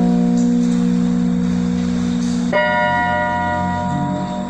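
Electronic arranger keyboard playing held chords in a bell-like tone, chord inversions in the key of F: one chord sustains, and a new chord is struck about two and a half seconds in and held.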